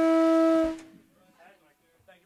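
End of a live rock song: a loud, held distorted electric-guitar note rings out on one steady pitch, then is cut off suddenly under a second in, leaving only faint room noise.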